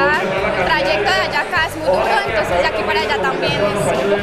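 A woman talking over crowd chatter, with background music.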